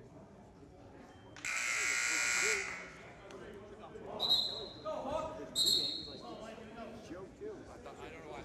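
Gym scoreboard buzzer sounding once for about a second, a loud, flat, raspy buzz. Then come two short shrill blasts of a referee's whistle about a second and a half apart, over a murmur of voices in the gym.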